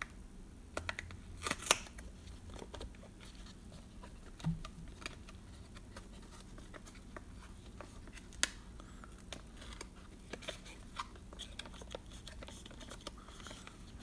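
Faint scratching and small clicks of fingers working open a cardboard box of baseball cards, with a few sharper ticks, one about a second and a half in and another about eight seconds in.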